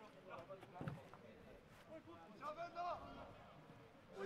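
Faint open-air ambience of a football match: a distant shout from a player on the pitch near the end, and a faint knock about a second in.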